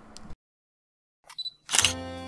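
Music cuts off into a second of dead silence; then come a few faint clicks with a short high beep, and a loud sharp click-like burst just before the music resumes.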